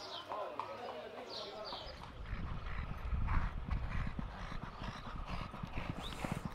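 Racehorse's hooves clip-clopping on a paved stable aisle as it is led at a walk, with faint voices in the background.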